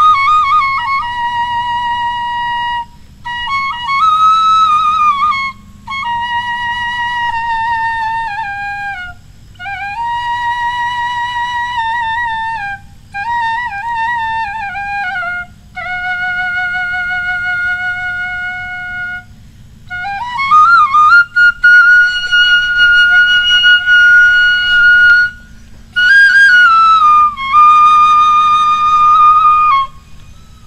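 Bamboo side-blown flute (bansuri) played solo: a slow melody of held notes with a slight waver, sliding between pitches and broken by short breaths. About two thirds of the way through it glides up to a long high note.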